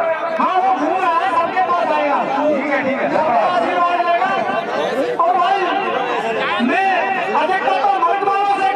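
Men talking over one another, one voice amplified through a handheld microphone and loudspeaker; only speech and chatter, nothing else stands out.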